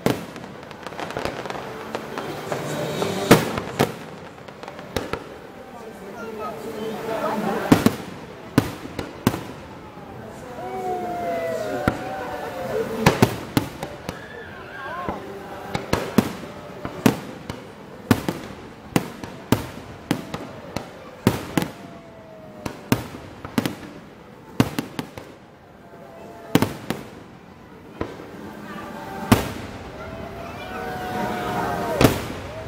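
Aerial fireworks shells bursting in a long irregular string of sharp bangs, some close together and some a second or two apart, with voices of spectators underneath.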